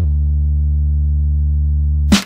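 A single deep synthesized bass note held at one steady pitch for about two seconds in an instrumental hip-hop beat, with the drums dropped out.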